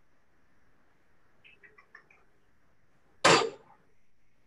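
A single short cough a little past three seconds in, after a stretch of faint background with a few tiny ticks.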